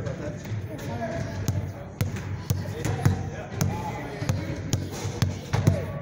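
Basketball being dribbled on a hard floor in a crossover drill: quick repeated bounces, about two a second.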